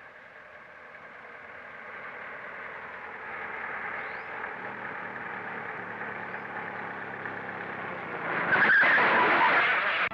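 A car approaching along a dirt road, its engine and tyre noise growing louder, then braking hard and skidding to a stop, loudest in the last two seconds.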